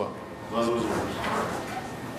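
A man's voice, quieter than the speech around it: a short stretch of talk about half a second in, then room noise in a meeting hall.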